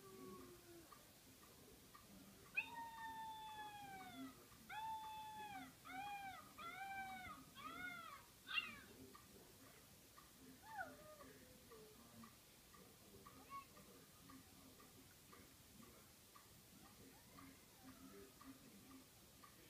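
A cat meowing through small laptop speakers: one long falling meow, then a quick run of about five shorter meows, and one more falling meow a few seconds later.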